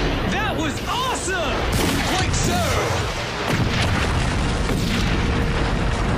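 A series of large explosions booming and rumbling continuously, with voices crying out over the first half and music underneath.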